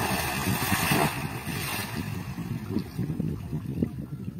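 Big splash as a black marlin of about 100 kg is heaved over the side of a wooden fishing boat into the water; the rushing spray trails off about two seconds in, leaving a low rumble underneath.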